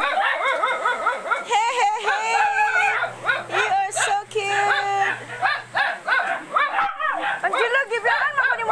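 Dogs whining and yipping in quick, high-pitched calls, with a couple of long held whines.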